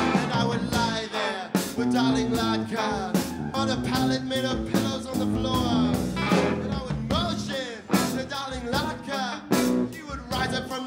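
A live band playing a blues-rock song, with guitars, percussion and a bending lead melody line.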